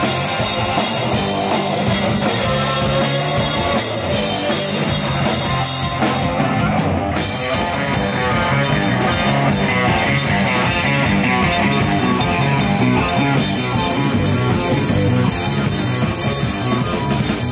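A live rock band playing loudly: electric guitar, electric bass and a drum kit together.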